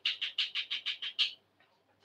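Bird chirping: a quick run of about eight high chirps lasting about a second and a half.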